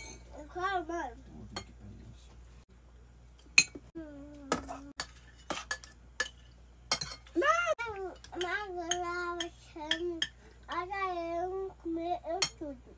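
A spoon clinking and scraping against ceramic plates and a cooking pot as food is dished out, in short sharp knocks scattered throughout, the loudest about a third of the way in. A high voice hums and makes wordless sounds at times, most of all in the second half.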